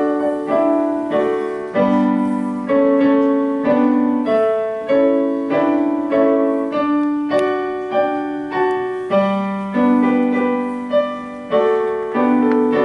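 Grand piano playing an introduction in full chords, struck at a steady pace of about one every two-thirds of a second, each left to ring and fade into the next.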